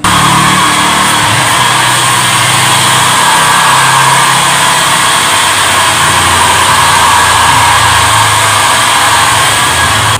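Hand-held hair dryer blowing loudly and steadily, with a low motor hum underneath; it cuts off suddenly at the end.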